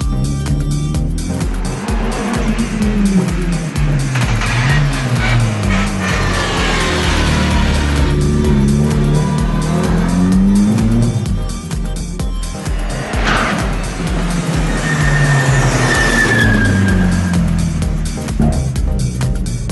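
Hill-climb race car engines revving hard and shifting up through the gears as two cars pass one after the other and pull away up the road, with a thin high squeal late on.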